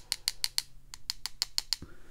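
Rapid light clicking of one paintbrush tapped against the handle of another, about six taps a second, to spatter tiny dots of paint. The tapping stops shortly before the end.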